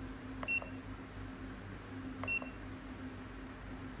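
Two short, high-pitched key beeps from an HN685 handheld hardness tester, a little under two seconds apart, each with the faint click of a keypad button being pressed.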